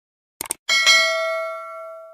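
A quick double mouse click, then a bright bell ding that rings out and fades: the stock sound effect of a subscribe-button animation, the cursor clicking the notification bell.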